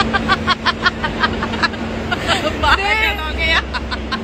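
Women laughing together in a quick run of short bursts, then a few spoken words, over a steady low hum.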